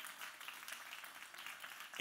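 Faint, steady hiss of room tone in a church sanctuary, with no clear event in it.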